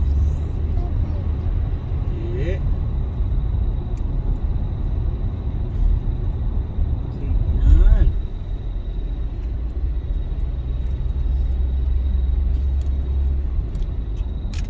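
Inside a moving car: steady low rumble of engine and tyres on wet road, with a brief louder swell a little before eight seconds in.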